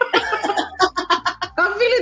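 A woman laughing in quick bursts, mixed with talk, over background music.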